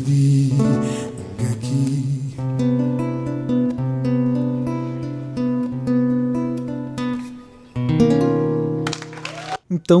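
Nylon-string acoustic guitar playing a series of chords with the notes left ringing, cutting off abruptly just before the end.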